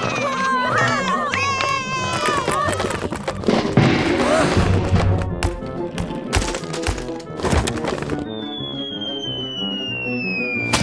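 Cartoon sound effects of a toy chain-reaction track collapsing: excited voices, then a rapid clatter of crashes and thuds, then a long falling whistle, over background music. The falling whistle marks the track failing and ending in a mess.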